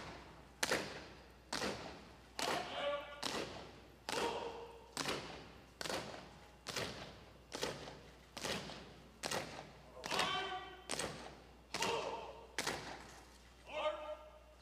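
An honor guard color team marching in step on a wooden stage: heavy, evenly paced heel strikes a little more than once a second, echoing in a large hall.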